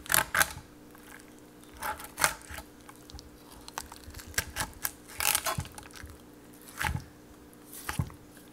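Knife filleting a lionfish on a wooden cutting board: a string of short scraping, crackling strokes as the blade cuts along the scaly skin and the fillet is lifted away, over a faint steady hum.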